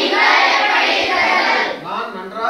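A class of students reciting together in unison, a chorus of many young voices that stops shortly before a single voice resumes.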